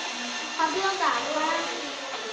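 Indistinct voices, with a few brief wavering vocal sounds, over a steady background noise.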